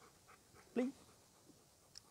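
Golden retriever whimpering faintly in a few short high-pitched whines.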